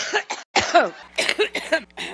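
A woman coughing: a short cough about half a second in, then several harsh coughs in quick succession.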